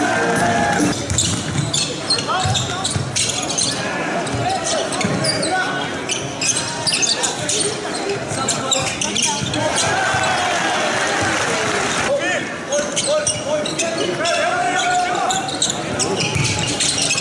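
Live basketball court sound in a large hall: a ball bouncing on the hardwood, sneakers squeaking and voices calling, with background music cutting off about a second in.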